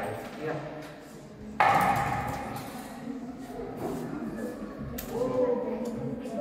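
Children and adults talking at low level across a large classroom. A sudden loud burst comes about one and a half seconds in, and a single sharp click near the end.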